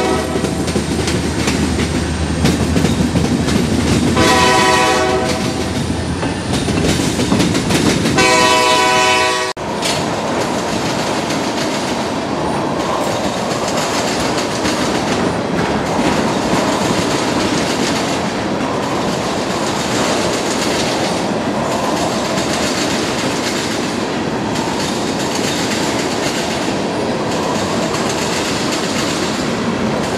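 Freight train locomotive horn sounding two chord blasts in the first ten seconds, a shorter one then a longer one, over the rumble of the passing train. After that comes a steady rolling rumble with clickety-clack as loaded freight cars, tank cars among them, pass close by.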